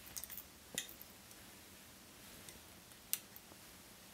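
Faint, sparse clicks of fly-tying tools being handled at the vise, with hackle pliers gripping a stripped quill to wind it along the hook shank. A few small clicks come at the start, another just under a second in, and a sharper single click about three seconds in.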